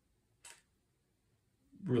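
A pause in talk, near silence, broken by one brief faint click about half a second in; a man's voice resumes near the end.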